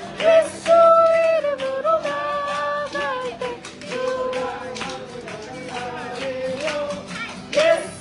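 Acoustic guitar strummed while voices sing a worship song in long held notes, with hands clapping along to the beat.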